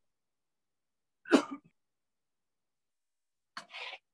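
A person coughs once, loud and short, about a second in, then a quieter short breathy sound near the end.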